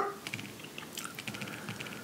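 Fingers tapping on a smartphone, a run of light, quick clicks.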